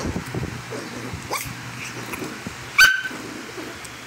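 A small dog, being brushed, gives a faint rising whine and then one short, sharp yelp about three quarters of the way through, over rustling from fur and handling.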